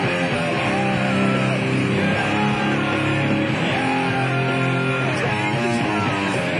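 Electric guitar in drop C tuning, a Schecter C-1 Classic through a small Line 6 Spider III amp, playing a rock song over a backing track: steady, sustained pitched notes with no break.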